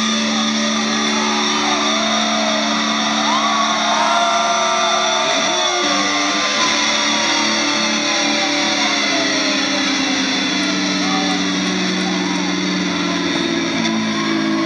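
Electric guitars and bass of a thrash metal band holding a sustained, ringing chord, with feedback, as a live song closes, under a crowd shouting and cheering. The held chord shifts about five and a half seconds in.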